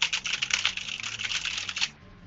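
Fast typing on a computer keyboard: a rapid, continuous run of key clicks that stops just before the end.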